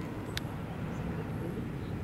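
Steady low outdoor background noise with no clear source, and one short sharp click about half a second in.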